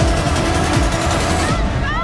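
Energetic electronic music with a steady beat cuts off about one and a half seconds in, giving way to a group of young women shouting and screaming excitedly in celebration.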